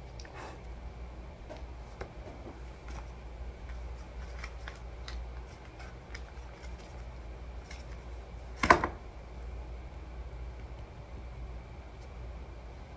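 Small handling noises: quiet scattered taps and rustles, with one loud sharp knock about three-quarters of the way through, over a low steady hum.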